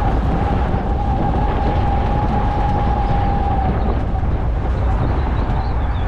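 Road noise of a truck towing a loaded trailer at road speed: a steady low rumble with a mid-pitched tone that fades out about four seconds in.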